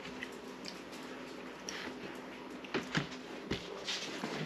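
Quiet room tone with a few soft clicks and taps, mostly in the second half, from food and a utensil being handled on a plate at the table.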